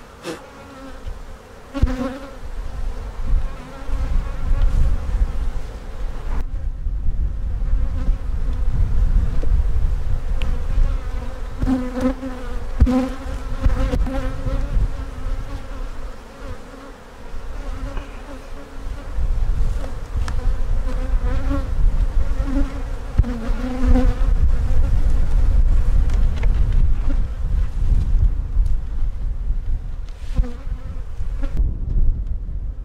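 Honey bees buzzing around an open hive: a humming drone that swells and fades as individual bees fly close past, over a low rumble.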